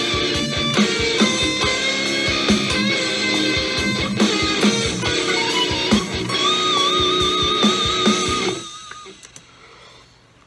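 Lead electric guitar solo played through an amp simulator with boost and delay, over a backing track with drums. Near the end it closes on a long held note with vibrato and then stops. The player finds this last lick not as clean as he wanted.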